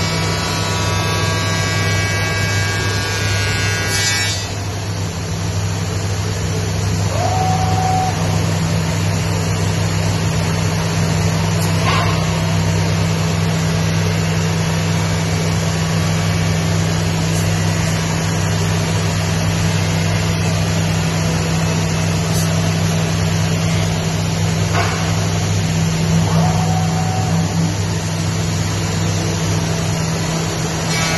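Masterwood Project 416L CNC machining center running with a steady low hum. For the first four seconds the router spindle adds a pitched whine and cutting noise as it mills wood, then this stops. Later come a couple of short clicks and a short tone twice.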